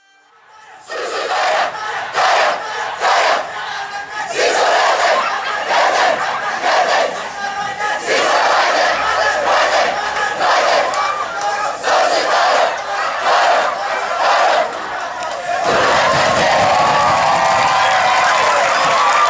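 Schoolboy rugby team shouting a war cry in unison, short massed shouts in a steady beat about once or twice a second. Two seconds or so before the end it gives way to steadier, continuous shouting from many voices.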